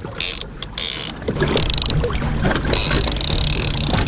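Boat engine running with water and wind noise, a steady low rumble and hum that comes up about a second in. A few faint clicks come before it.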